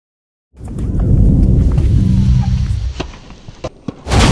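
A loud, deep rumble starts about half a second in and dies away a little before three seconds in. It is followed by a few sharp clicks before the music hits.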